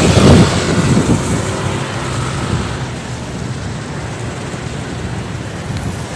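Roadside traffic noise: a loud rush in the first second or so that fades into a steady hiss.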